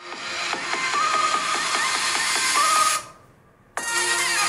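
An electronic song played through a smartphone's built-in stereo speakers in a speaker comparison. About three seconds in it drops away to a faint, muffled remnant, then comes back in abruptly shortly before the end, as playback switches.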